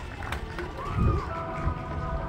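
A marching band on a stadium field, heard from high in the stands during a soft stretch of its show: low rumble and a few gliding tones, a louder low swell about a second in, then sustained band chords entering about halfway through.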